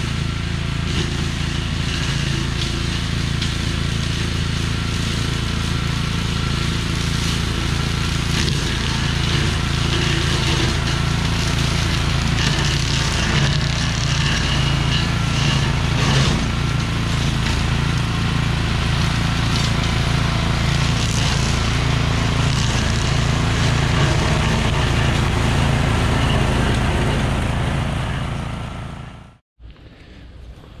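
Honda GXV390 single-cylinder overhead-valve engine of a Little Wonder walk-behind brush cutter running steadily under load as it is pushed through brush, with occasional sharp knocks. The sound cuts off suddenly near the end.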